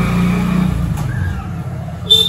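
Motorcycle engine running as the bike pulls away, its sound fading steadily as it moves off.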